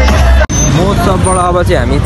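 Live concert music and crowd noise cut off abruptly about half a second in. A man's voice then comes in over a steady low rumble of vehicle and road noise.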